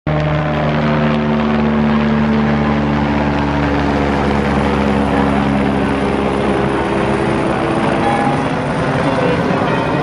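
A helicopter flying overhead, its steady rotor drone fading over the last few seconds, with a crowd's voices beneath it.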